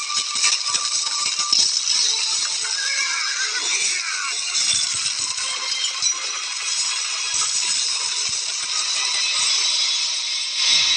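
Film soundtrack mix of a horse-drawn chariot chase: a horse whinnying over hooves and the rattle of chariot wheels on stone, under background music.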